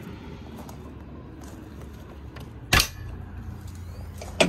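One sharp clack about three-quarters of the way through, over low steady outdoor background noise: the cab door latch of a Bobcat compact wheel loader being released as the door is opened.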